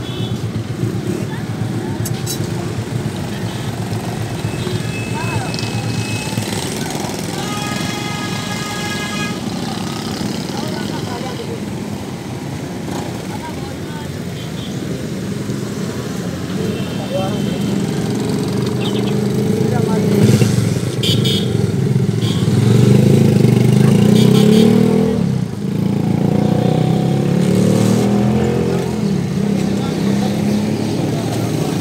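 Busy street traffic: motorcycle and motorcycle-rickshaw engines running and passing, with people's voices in the background. A brief pitched tone sounds about eight seconds in, and in the last third an engine close by grows louder and stays near.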